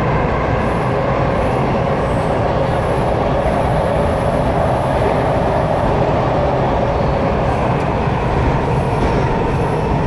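Washington Metro (WMATA) subway train running between stations, heard from inside the car: a steady, loud rumble of wheels and running gear on the rails.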